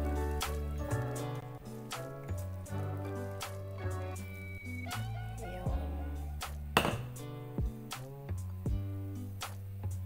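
Background music with a steady bass line and a regular beat, with a single sharp hit about seven seconds in.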